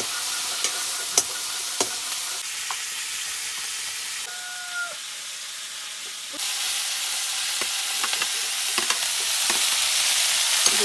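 Chicken frying in a wok with a steady sizzle, with a few sharp clacks of metal tongs against the pan in the first two seconds. The sizzle drops lower for about two seconds mid-way, then comes back louder toward the end.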